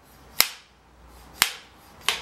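Hand-made wooden film clapperboard snapped shut twice, two sharp clacks about a second apart.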